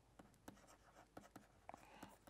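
Faint light taps and scratches of a stylus writing on a digital pen tablet, a few small ticks over near silence.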